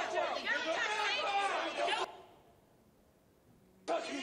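Several people's voices talking at once in a crowd for about two seconds. The voices stop suddenly, there is a near-quiet pause, and they start again near the end.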